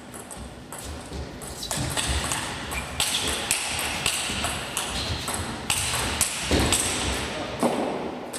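Table tennis rally: the ball clicks sharply off rackets and table in a fast back-and-forth exchange, about two hits a second.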